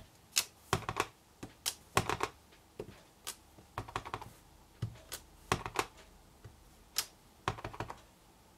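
Clear acrylic stamp block repeatedly tapped onto an ink pad and pressed down onto card stock: a run of irregular sharp clicks and knocks, about two or three a second.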